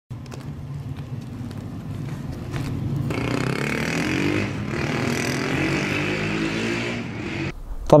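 A motor vehicle engine running and growing louder, its pitch rising slowly as it revs, then cutting off abruptly about seven and a half seconds in.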